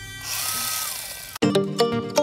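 Makita DUC150 cordless chainsaw given a short burst: the motor whine rises, holds and falls away as the chain coasts down. Music cuts in abruptly near the end.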